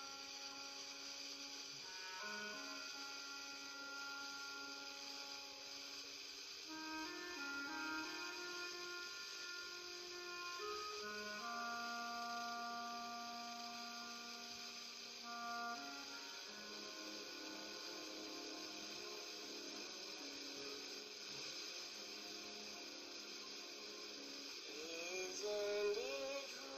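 Music from an FM radio broadcast, slow held chords that change every few seconds, received by a homemade two-transistor FM receiver and played through a small speaker amplifier, with a steady hiss under it.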